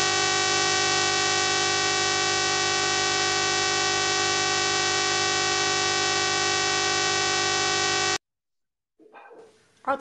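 A loud, perfectly steady buzzing tone, like a horn or buzzer, held unchanged for about eight seconds and then cut off abruptly.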